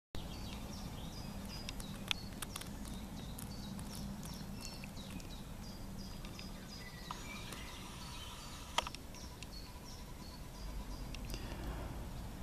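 Outdoor ambience: small birds give frequent short, high chirps over a steady low background rumble, with two sharp clicks.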